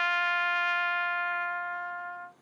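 Solo trumpet holding one long, steady note in a slow call, fading near the end.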